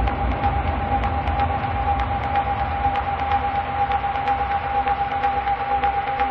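Breakdown in an electronic dance track: the kick drum drops out, leaving a steady droning tone over a noisy wash with faint, regularly spaced ticks.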